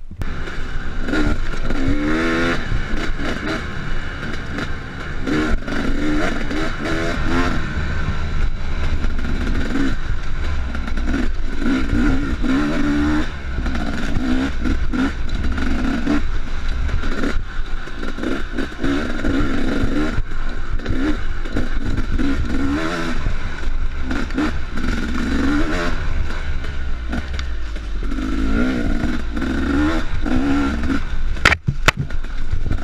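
Two-stroke KTM 250 SX dirt bike engine, heard from a handlebar camera while riding a trail, revving up and dropping back over and over as the throttle is worked. Scattered knocks and clattering from the bike over the rough ground run through it.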